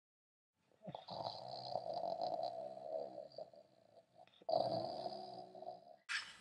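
A person snoring: two long snores, the first starting about a second in and lasting about three seconds, the second shorter, near the end.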